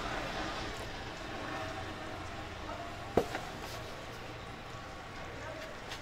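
Indistinct background voices over steady noise, with one sharp click about three seconds in.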